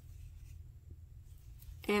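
Faint scratchy rustle of a crochet hook and yarn being worked through stitches, over a low steady hum.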